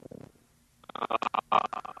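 A man laughing: a quick run of short pulsed 'ha' sounds starting about a second in, after a brief low vocal sound at the very start.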